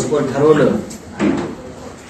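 Speech: a man talking for about the first second, a short phrase after that, then a pause with only room sound.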